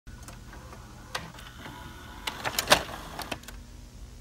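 A series of sharp clicks and knocks, several in quick succession and the loudest about two and a half seconds in, over a low steady hum.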